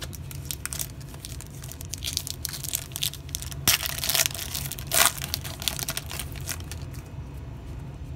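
Foil wrapper of a football trading-card pack being torn open and crinkled by hand: a dense run of crackles, loudest in the middle.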